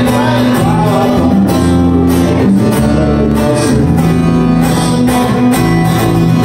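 Live acoustic duo music: a strummed acoustic guitar over a steady electric bass line.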